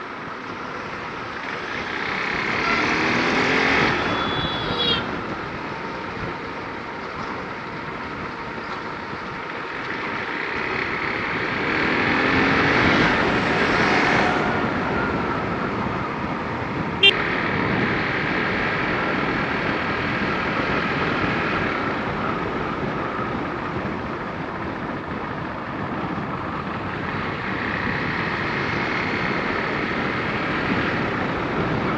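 Motorcycle engine under way with wind noise over the microphone. The engine note rises twice as the bike accelerates, about two seconds in and again around twelve seconds in. There is one sharp click about seventeen seconds in.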